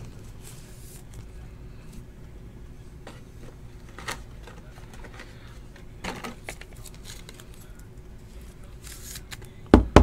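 Faint scraping and small clicks of a trading card being handled and slid into a rigid plastic top loader, with a couple of sharp knocks near the end.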